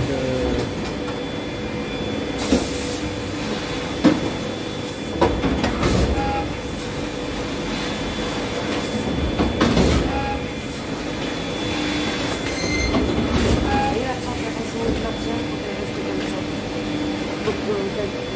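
CP Bourg CMT 130 three-knife trimmer running: a steady machine hum with several sharp knocks in the middle of the stretch and a short hiss a couple of seconds in.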